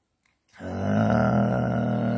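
A man's voice holding one steady, low-pitched drawn-out vowel or hum for about two seconds, starting half a second in: a hesitation sound in the middle of a sentence.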